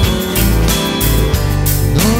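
Music: a strummed acoustic guitar playing a short instrumental stretch between sung lines, with steady low bass notes underneath.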